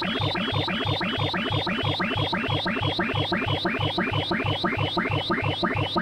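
Electronic tones from a sorting-algorithm sound animation running bubble sort, their pitch following the heights of the bars as they are compared and swapped. The tones come as a rapid stream of chirping pitch sweeps, about four or five a second, each sweep one pass through the bars.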